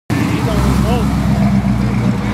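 Square-body Chevrolet C10 pickup's engine and exhaust running with a steady low drone as the truck drives past.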